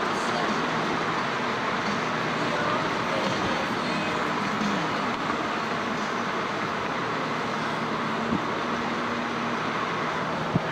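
Steady road noise of a car being driven along a highway, an even hum of tyres and engine with no sharp events.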